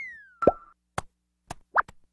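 Cartoon sound effects: a whistle sliding down in pitch, then a plop about half a second in, followed by a few sharp clicks and a short rising squeak. It is the cartoon signal of something dropping to the ground.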